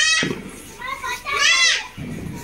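Young children's high-pitched squealing voices while playing: one squeal at the start, a short one near the middle and a longer one about a second and a half in, each rising and falling in pitch.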